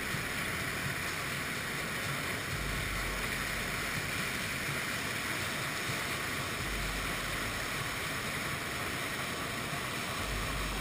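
FlowRider sheet-wave surf machine: a thin sheet of pumped water rushing steadily up the ride surface, heard as a constant, even rush of water and spray.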